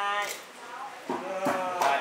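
Speech only: a person's voice draws out one long syllable at the start, then talks again about a second in and near the end.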